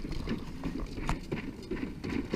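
A wheeled plastic cooler rolling over the boards of a wooden footbridge, with footsteps on the planks: a rapid, irregular clatter of hollow knocks.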